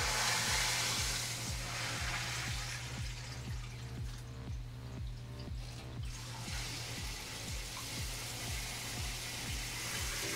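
Water well pump running with a steady hum and a low pulse a little over twice a second, as water flows into freshly refilled whole-house filter housings with a hiss.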